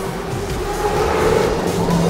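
A vehicle-like rushing sound that builds to its loudest about a second in, over background music.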